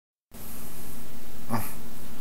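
Steady hiss of a webcam microphone with a faint steady hum, starting just after the opening moment, and one brief breathy sound about one and a half seconds in.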